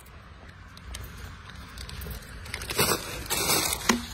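Paper food bags rustling and crackling twice near the end as rubbish is pushed through the swing flap of a litter bin, over a low steady rumble.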